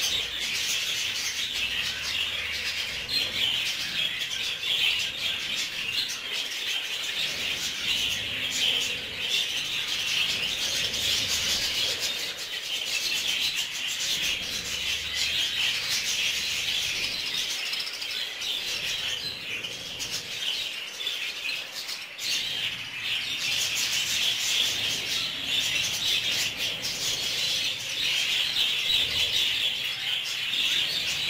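A flock of budgerigars chattering and warbling without pause, a dense, steady stream of high chirps.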